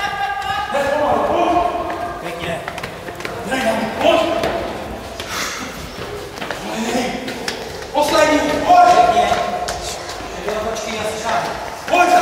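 Men shouting encouragement in an echoing stairwell, mixed with the knocks of boots on the stairs as a firefighter in turnout gear climbs.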